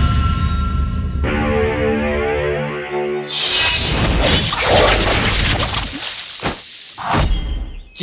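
Edited commercial soundtrack: a low rumble, then a short stepping melodic riff. A loud crashing, shattering burst follows near the middle, with a few sharp hits toward the end.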